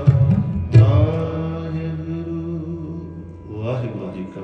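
Harmonium and tabla closing a Sikh shabad kirtan: a last tabla stroke about a second in, then a harmonium chord held and fading away.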